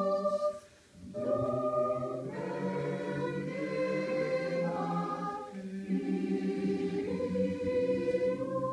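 Mixed choir of men and women singing slow, sustained chords, breaking off briefly a little under a second in and then coming back in.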